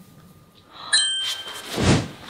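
A smartphone notification chime about a second in, a bright bell-like ding whose tones ring on briefly, signalling an incoming message. It is followed by a rising whoosh that swells toward the end.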